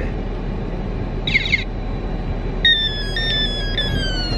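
Toy ray gun's electronic sound effects: a short falling zap about a second in, then a longer electronic tone that steps down in pitch from a little before three seconds in. Under it runs the steady low rumble inside a car.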